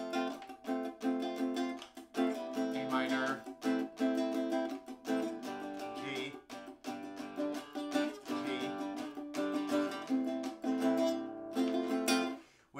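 Nylon-string acoustic-electric guitar strummed in a steady down-up rhythm, moving through a chord progression with the chord changing about every two seconds.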